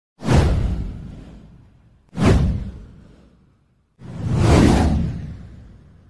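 Three whoosh sound effects from an animated news intro. The first two hit suddenly and fade over about two seconds each. The third swells in about four seconds in and fades away.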